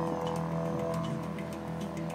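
Wooden didgeridoo played as a continuous low drone, its upper overtones shifting and swelling as it is voiced.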